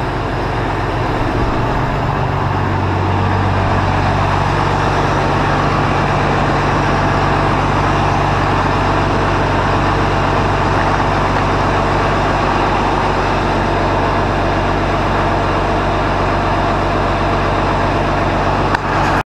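Case 2090 tractor's six-cylinder diesel engine idling steadily, growing louder about two seconds in as it is approached inside a metal shed; it is running after its new fuel filters were fitted and the fuel system bled of air.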